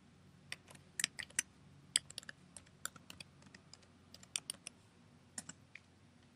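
Computer keyboard being typed on: a run of light, irregularly spaced key clicks as a single word is entered, with short pauses between bursts.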